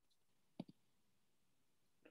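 Near silence, broken by a faint, short double click a little over half a second in.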